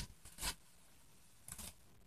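A mostly quiet room with a few faint, brief rustles: the embroidery fabric and its satin ribbons being handled and moved. One rustle comes right at the start, one about half a second in, and a softer one about a second and a half in.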